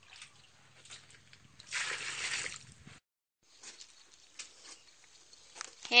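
Muddy water sloshing and splashing on the floor of a concrete tank as it is scooped out, with one louder splash about two seconds in.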